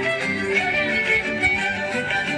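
Instrumental music with violin over guitar accompaniment, in steady held notes.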